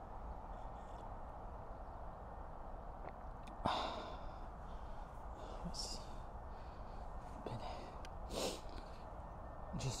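A man breathing out in a few short sighs, the loudest about four seconds in, over a steady low outdoor hiss.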